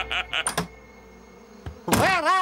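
Cartoon background music ending on a sharp hit about half a second in, then a quiet pause, then a sudden loud thump just before the end.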